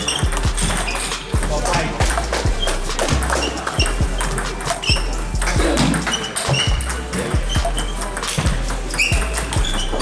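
Table tennis rally: the plastic ball clicking sharply off bats and table in a quick, uneven run, with a hum of voices from the busy hall behind it.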